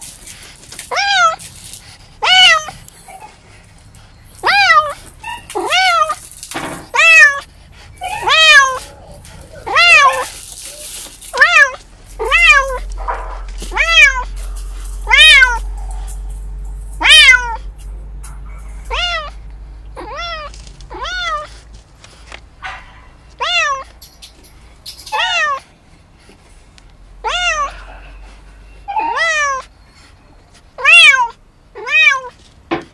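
Kitten meowing over and over, about once a second: short, high calls that rise and fall in pitch.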